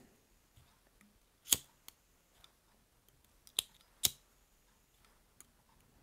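A pocket lighter struck a few times, giving sharp single clicks a couple of seconds apart, the loudest about a second and a half in and again about four seconds in, with quiet between. The flame is being used to soften a foam fly body between presses.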